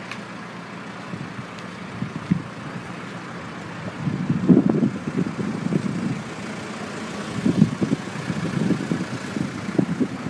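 Wind buffeting the microphone in irregular low gusts, strongest about four to five seconds in and again near eight seconds, over a steady faint background hiss.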